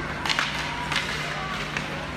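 Sharp clacks of ice hockey sticks and puck striking: a quick pair about a third of a second in, another near one second and a lighter one near the end, over a steady low hum.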